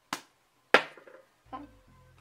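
Two short sharp clicks, the second and much louder one about three quarters of a second in, each dying away quickly.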